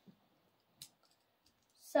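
Small plastic Lego pieces clicking as they are handled and fitted together in the hands, a few separate clicks with a sharper one just before a second in.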